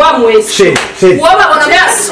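A woman speaking loudly and heatedly in an argument.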